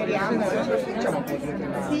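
Chatter: several people talking at once in overlapping conversation.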